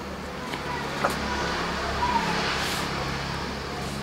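A motor vehicle passing by, swelling and fading in the middle, over a steady low hum. A single light click comes about a second in.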